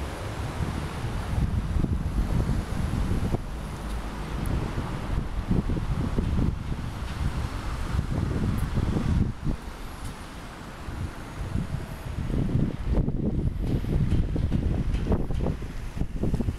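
City road traffic from cars and buses, a continuous rumble from the street, with gusts of wind rumbling on the microphone; it eases off briefly a little past the middle.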